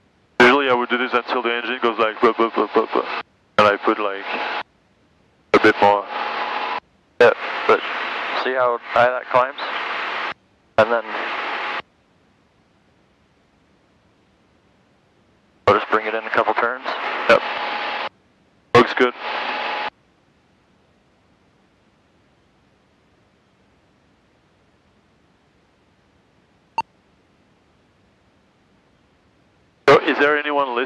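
Voices coming over the aircraft's VHF radio into the headsets in clipped transmissions that cut in and out abruptly: a long one lasting about twelve seconds, then a shorter one a few seconds later. The sound is thin, with no bass, and there is near silence between transmissions, with a single click near the end.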